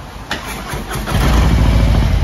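Harley-Davidson Low Rider S (2021) Milwaukee-Eight 114 V-twin being started. The electric starter cranks for under a second, then the engine catches about a second in and settles into a steady, loud, pulsing idle through a Stage I S&S Race Only exhaust.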